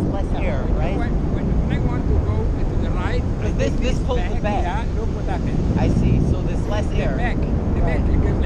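Steady, heavy wind noise from the airflow of a tandem paraglider in flight buffeting an action camera's microphone, with faint pitched calls or voices over it.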